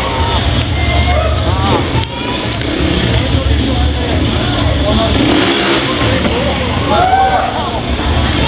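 Trials motorcycle engine running at low revs under a steady mix of loudspeaker talk and background music.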